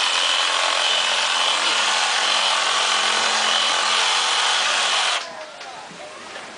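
Reciprocating saw running steadily with a faint whine as its blade cuts into a pumpkin, stopping suddenly about five seconds in.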